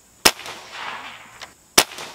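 .22-caliber pre-charged pneumatic air rifle fired twice, about a second and a half apart: two sharp cracks, each followed by a short fading wash of sound.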